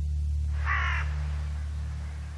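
A single caw from a corvid, a short call about two-thirds of a second in, over a low steady hum.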